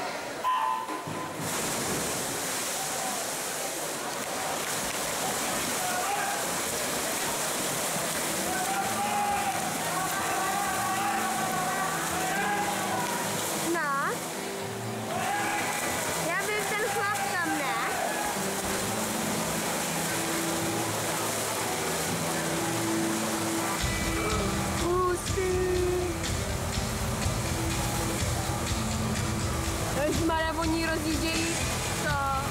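A short electronic start signal just after the opening, then spectators cheering, shouting and whistling in an echoing indoor swimming hall over the splashing of swimmers racing freestyle. A low rumble joins in near the end.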